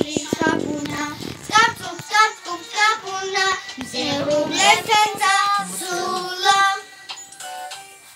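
Young girls singing a song together, the singing dying away shortly before the end.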